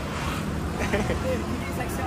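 Faint, scattered chatter from a group of people over a steady low rumble of road traffic.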